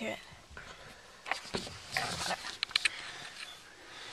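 A pet dog moving about close to the microphone, with a few short scratchy and clicking noises of movement and handling, mostly in the middle of the stretch.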